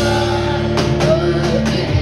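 Live rock band playing: electric guitar and other instruments holding notes, with several drum hits, heard from the crowd in a club.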